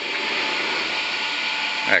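Montorfano GE14 CNC wire bending machine running, with a steady whirring hiss as steel wire is drawn through its roller straightener.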